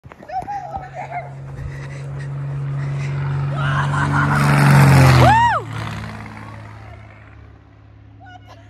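Cessna 172 single-engine propeller plane passing low overhead: the engine and propeller drone builds steadily, peaks about five seconds in, then falls in pitch and drops away sharply as it goes past, fading after. A brief high-pitched cry rises and falls right as it passes, and short voice sounds come near the start.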